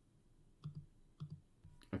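Faint computer mouse clicks: two short clicks about half a second apart, near the middle, as the presenter works the editor on screen.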